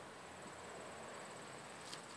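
Faint, high-pitched insect trilling, a fast steady pulsing, over quiet outdoor background hiss.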